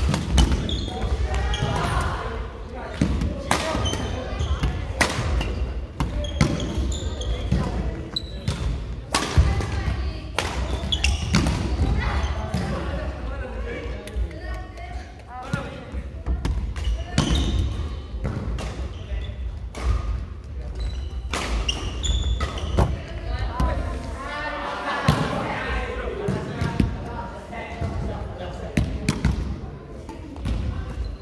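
Badminton doubles rallies on a wooden gym floor: repeated sharp racket strikes on the shuttlecock and players' footfalls, with voices in a large hall.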